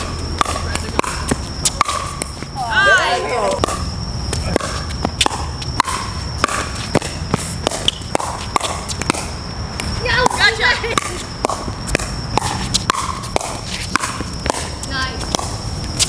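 Pickleball paddles striking the hard plastic ball during a rally: a string of sharp, hollow pocks at irregular intervals. Players' short excited shouts come about 3 seconds in and again around 10 seconds, and a faint steady high whine runs underneath.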